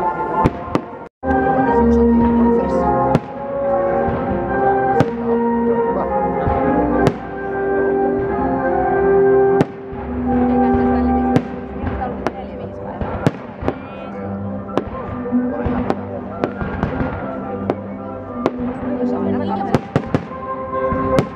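Fireworks bursting in a stream of irregular sharp bangs over a music soundtrack with long, held notes. This is a pyromusical display, with shells fired in time to the music. The sound drops out briefly about a second in.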